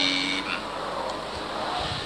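A man's chanted zikr line ends on a drawn-out 'Kareem', held on one steady note for about half a second, then gives way to steady background noise from the recording.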